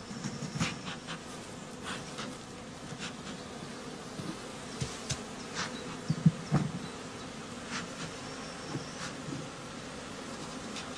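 Honeybees of a newly hived shook swarm buzzing at the hive, a steady hum with passing swells. Scattered clicks and knocks sound over it, the loudest about six seconds in.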